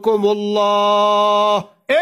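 A man's voice drawing out one long, steady note in chanted sermon delivery, cutting off about a second and a half in, with a moment of silence before the next word.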